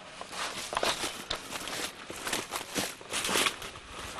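Footsteps on dry, brushy ground, an irregular series of steps with rustling.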